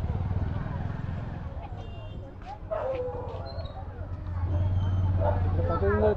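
Indistinct background voices over a steady low rumble, which grows louder in the second half.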